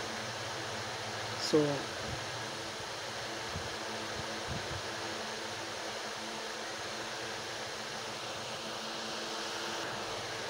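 A fan running steadily: an even hiss with a faint low hum, broken once by a single short spoken word.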